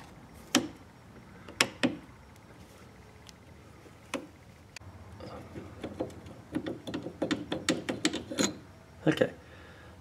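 Sharp metal clicks and taps of a screwdriver and then pliers on a transfer case shift lever linkage as a retaining pin is worked out. There are a few separate clicks in the first half and a quick run of clicks in the second half.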